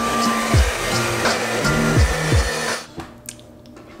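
Hand-held hair dryer blowing, mixed with background music with a bass beat. Both cut off suddenly about three-quarters of the way through, leaving only faint sound.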